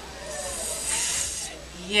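A woman's drawn-out hiss of breath through the teeth, lasting about a second and a half: a hesitant reaction to a question she finds awkward to answer.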